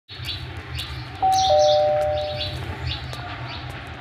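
Doorbell ringing ding-dong: a higher note about a second in, then a lower note, both ringing out for about a second. Birds chirp in short calls throughout, over a low steady rumble.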